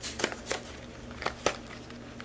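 Plastic snack-bag wrapper crinkling as it is handled, in several short crackles.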